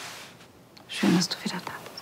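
A soft, breathy whisper, then a short murmured vocal sound with a few small clicks about a second in, from two people close together in an embrace.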